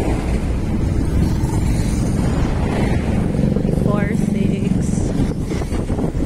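Road traffic heard from a moving vehicle: a steady engine and road rumble, with a steadier engine drone standing out from about three seconds in and a short rising call near four seconds.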